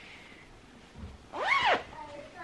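A cat meowing once, a single call about a second and a half in whose pitch rises and falls back.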